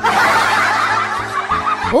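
Breathy, unpitched laughter lasting nearly two seconds and fading near the end, over faint background music.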